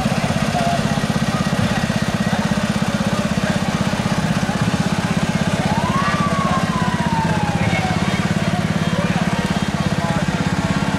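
An engine running steadily with a fast, even pulse as parade vehicles crawl past. About six seconds in, a thin whistle-like tone rises briefly and then slides slowly down over a couple of seconds.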